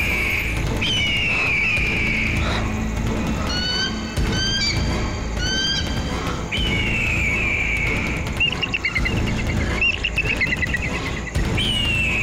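Horror background score: a low sustained drone under repeated high, falling, bird-like screeches, each about a second long, with short chirps and a warbling trill between them.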